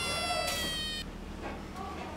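A long held note, rich in overtones, sliding slowly down in pitch and stopping abruptly about a second in: a comic sound effect.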